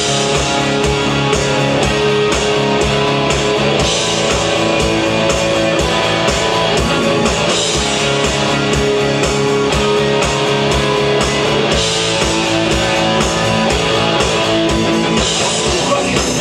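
Live rock band playing an instrumental passage: electric guitars over a drum kit keeping a fast, steady beat.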